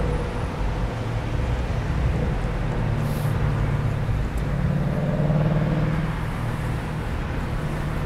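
Steady low traffic rumble, with a vehicle engine hum that swells about five seconds in and then fades.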